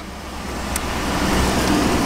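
Steady low rumble and hiss of a 2011 Chevrolet Tahoe's 5.3-litre V8 idling after a remote start, with one faint click about three-quarters of a second in.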